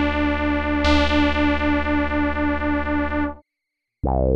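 Roland SH-101 analog monosynth sounding a held low note with a bright, buzzy tone rich in overtones. The note is struck again about a second in, then released, and it dies away shortly after three seconds.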